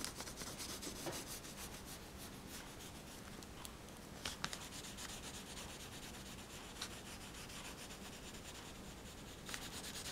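A yellow pastel stick rubbed over drawing paper in repeated short strokes, a soft continuous scratching with a few sharper ticks about halfway through.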